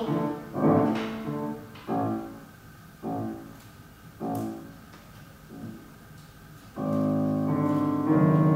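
Solo piano playing slow, separate chords, each ringing out and fading, about one every second and a half and growing softer. A fuller, louder chord comes in and is held near the end.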